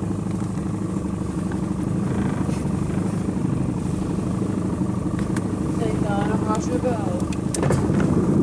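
Small boat's outboard motor running steadily at low speed, an even low drone.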